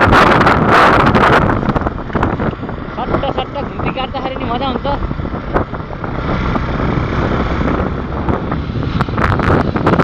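Motorcycle riding along a road, with heavy wind buffeting on the microphone over the engine and road noise. A voice comes through briefly about three to five seconds in.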